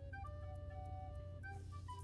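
Quiet background music: a simple melody of short and held single notes on a flute-like instrument, with one longer note near the middle.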